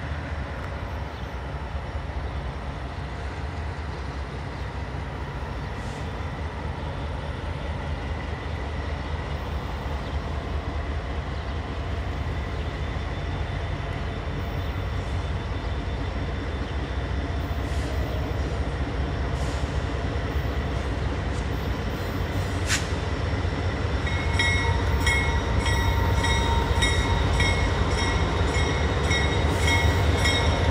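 A four-unit CN diesel freight lash-up of three GE Dash 9-44CWs and an EMD SD75I starts its pull and approaches. The locomotives' low, steady rumble grows louder as they near. In the last few seconds a bell begins ringing at a steady beat, about twice a second.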